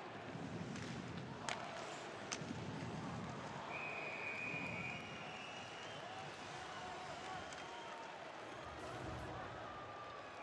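Ice hockey arena sound: crowd noise and shouting voices in the stands, with two sharp clicks from play on the ice about a second and a half and two seconds in, and a high whistle held for over a second around four seconds in.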